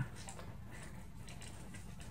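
Faint rustling and light scraping of thin card stock handled by fingers, over a low steady hum.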